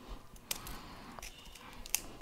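Scissors cutting folded paper: a few faint snips.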